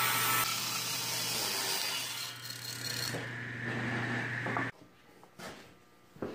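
Table saw ripping along the edge of a soft pallet-wood board. Its motor hum runs on steadily after the cut, then stops abruptly near the end.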